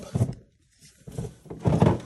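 Wiring cable being handled and coiled against plastic under-dash panels, heard as rubbing and light knocking. A brief dead-silent gap falls about half a second in, and the handling grows loudest near the end.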